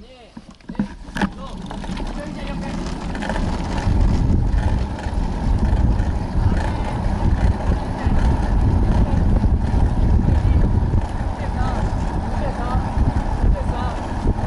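Wind noise on the microphone of a camera moving down the runway. It builds over the first few seconds as the camera picks up speed, then holds as a steady, heavy low rumble. A few sharp clicks come near the start.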